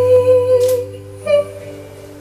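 A woman's voice holds one long wordless note over an acoustic guitar. The note ends a little under a second in, a short higher note follows, and the guitar chord is left ringing more quietly.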